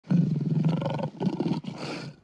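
Lion roar sound effect: one long roar of about a second, then two shorter ones.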